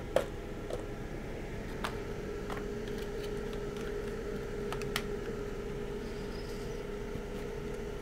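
A fan runs with a steady hum and a faint held tone, while a few light clicks and taps of tools and parts being handled on a workbench sound over it; the sharpest tap comes just after the start.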